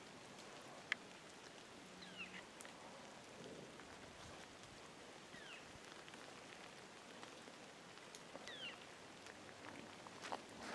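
Near silence, with a faint bird call, a short falling whistle, heard three times about three seconds apart, and one sharp tick about a second in.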